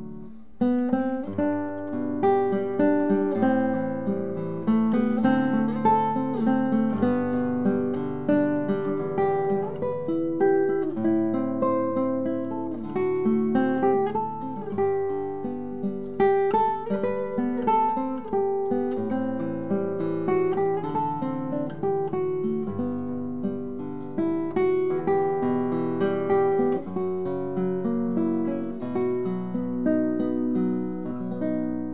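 Hong Yun-sik No. 100 handmade classical guitar, nylon strings fingerpicked in a continuous solo piece. A melody runs over bass notes, with several strings ringing together, after a brief pause right at the start.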